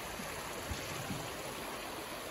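A shallow river rushing steadily over rocks and riffles.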